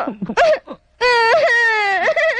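A man's voice in a few short cries, then about a second in one long, loud wail that slowly falls in pitch.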